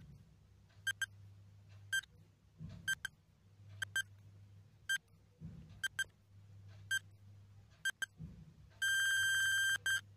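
Countdown timer sound effect beeping once a second, then one long beep of about a second as the time runs out, over a faint low hum.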